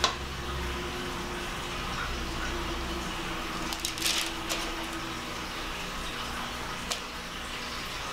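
A few short clicks and scrapes of spoons against a stainless-steel mixing bowl as chocolate frosting is scooped onto cookie dough, over a low steady room hum. The clearest click comes about halfway through.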